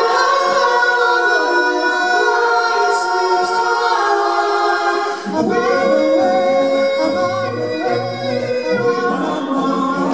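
All-male a cappella group singing held chords in close harmony, amplified through the hall's sound system. A low bass voice enters about five seconds in and fills out the bottom of the chord.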